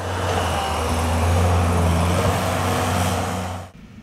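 Skid-steer loader's engine running steadily as it pushes snow: a low, even drone with a hiss over it. It cuts off near the end.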